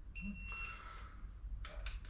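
Electronic torque wrench giving one short high-pitched beep of about half a second as the bolt reaches the set torque. A couple of faint clicks follow near the end.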